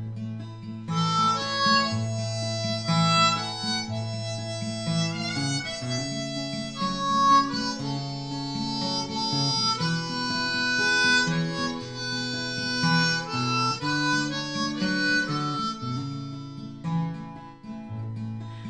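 Harmonica playing the melody over acoustic guitar accompaniment: an instrumental break between verses of a folk song.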